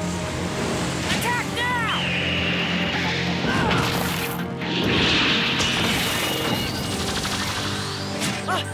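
Cartoon battle soundtrack: dramatic background music under magical sound effects. Arching, chiming sweeps come about a second in, and a loud rushing burst about five seconds in.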